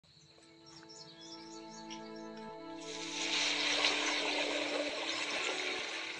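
Music fading in, joined about three seconds in by a rush of splashing water as a mountain bike's tyres ride through shallow water running over rock.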